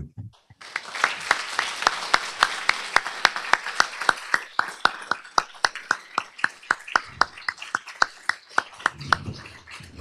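Audience applauding, with one person's sharp claps standing out close to the microphone at about four a second. It starts about half a second in and fades near the end.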